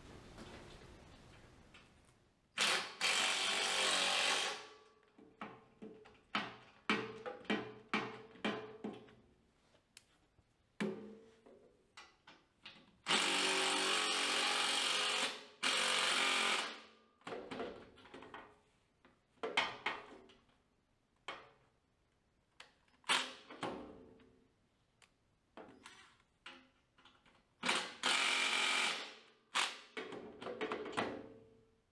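A handheld power drill running in several bursts of one to three seconds, driving in the 5/16 cap screws that hold the leg and footwell panels. Short metallic clicks and knocks of parts and tools come between the bursts.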